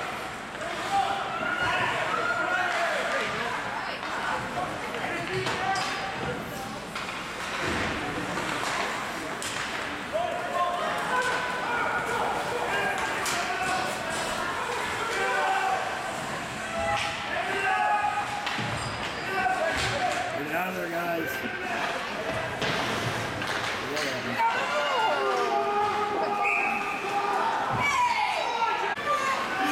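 Spectators talking and calling out at an ice hockey game, with sharp clacks of sticks and puck and thuds off the boards scattered throughout.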